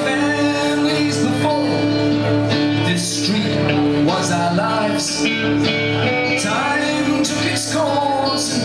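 Live band playing a mid-tempo rock song: electric guitar and strummed acoustic guitar, with a man singing.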